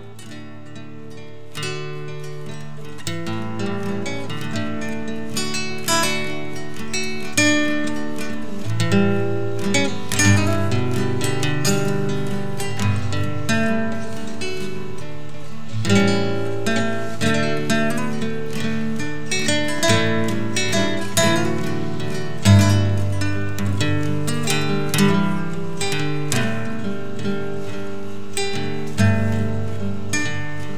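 Acoustic guitar playing an instrumental introduction, picked notes and chord strokes over a bass line, fading in over the first couple of seconds.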